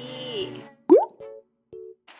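A cartoon-style 'bloop' sound effect rising quickly in pitch about a second in, followed by a couple of short blips. Light background music fades out just before it.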